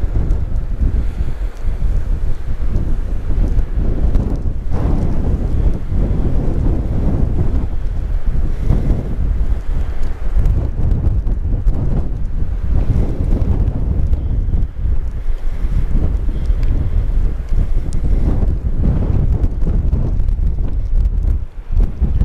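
Strong wind, about 30–40 mph, buffeting the camera microphone: a loud, continuous rumble that rises and falls with the gusts.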